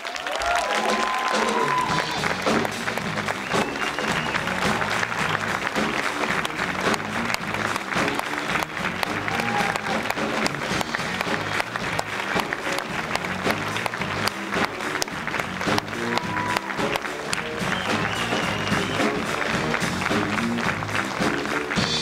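Audience applauding steadily over music, with a few cheers, as an award winner is called to the stage.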